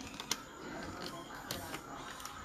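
Computer keyboard keystrokes: a few irregular clicks as a filename is typed, over a faint steady background noise.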